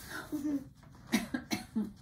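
A person's cough and a few short, quiet murmured syllables.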